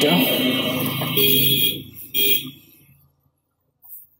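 Digital multimeter's continuity buzzer sounding, a high steady beep lasting nearly two seconds and then a second short beep, the tester signalling continuity across the probed points while a short is hunted on the TV panel's board.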